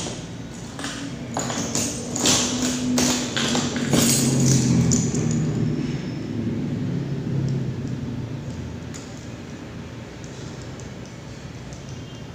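Small metal parts of an electric fan's swing mechanism clicking and tapping as they are handled, the sharpest clicks in the first four seconds. A low hum runs through the middle and fades out after about eight seconds.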